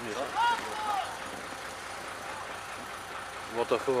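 A narrow-gauge diesel locomotive idling with a steady low rumble. A person calls out briefly in the first second, and talk starts near the end.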